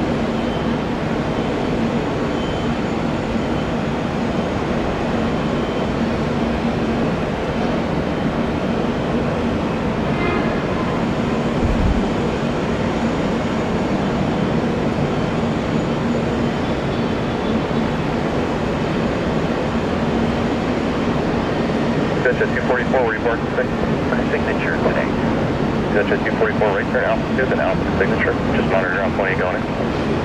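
Jet engines of an Airbus A320neo at takeoff thrust, a loud steady noise with a low hum through the takeoff roll and climb-out. The engines are CFM LEAP-1A turbofans.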